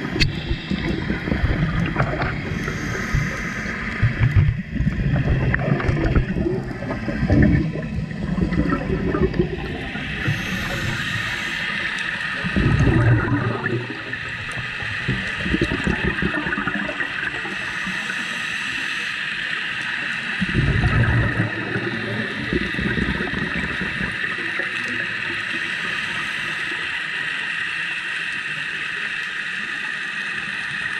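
Scuba regulator exhaust bubbles heard underwater through the camera housing: bursts of bubbling, several in the first third, then two more about eight seconds apart, over a steady high hiss.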